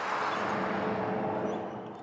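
SUV towing a camper trailer driving past, its tyre and engine noise steady and then fading away near the end.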